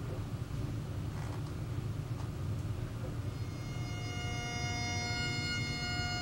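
Recorded bagpipe music by a pipe band starting up: a low steady rumble, then about halfway in, the held pipe tones come in and build.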